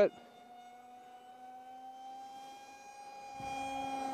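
DYS BE2208 2600 Kv brushless motor spinning a Master Airscrew 6x4x3 three-blade prop on an RC park jet at part throttle. It makes a steady whine, almost like an EDF, that grows louder in the last second or so.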